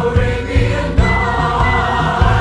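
Broadway show tune: an ensemble chorus singing over a full orchestra, with a steady beat of low drum hits about twice a second.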